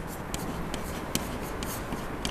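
Chalk writing on a blackboard: a string of short, irregular scratches and taps as words are chalked.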